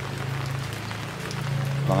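Light rain pattering, with a steady low hum underneath.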